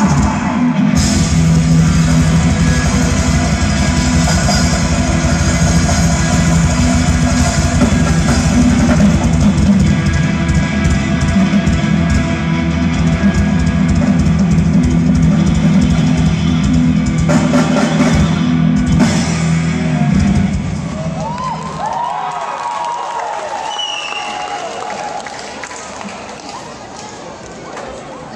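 Live rock band playing through a PA: drum kit, distorted electric guitars and bass at full volume. About twenty seconds in the band stops together, and the last notes ring out and fade.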